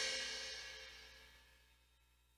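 Ketron Event arranger keyboard's rhythm just stopped: the last cymbal and reverb tail fade away over about the first second, then near silence.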